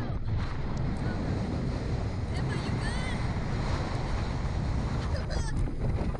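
Wind buffeting the microphone of a camera mounted on a Slingshot reverse-bungee ride capsule as it swings through the air: a steady, rumbling rush.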